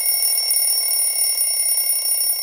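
A wake-up alarm ringing: a loud, steady, high-pitched electric ring with a buzzing edge.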